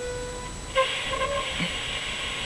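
Audio from a radio wired to a CRT TV's deflection magnets: a steady electronic buzz, joined about three-quarters of a second in by a band of hiss.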